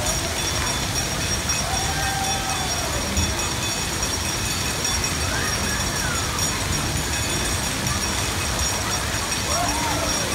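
Steady rush of water from the spray jets and fountains of a water-park play structure, with distant voices calling out now and then.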